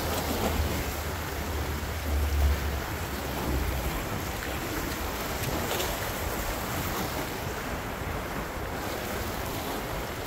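Ocean surf washing against a rock jetty, with wind buffeting the microphone; the low wind rumble is strongest in the first four seconds.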